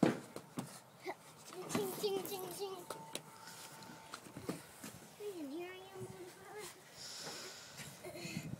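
A child's voice calling out and making wordless sounds, with knocks and thumps from hands and shoes on a wooden trailer deck; the loudest is a thump at the very start.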